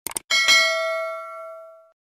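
Notification-bell sound effect on an end screen: two quick clicks, then a bright bell ding that rings for about a second and a half, fading, and cuts off.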